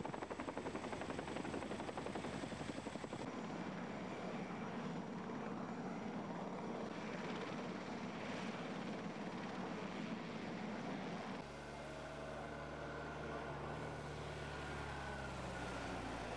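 Steady engine noise with a rapid, even pulsing through the first few seconds. About eleven seconds in it changes abruptly to a steadier engine hum with several held tones.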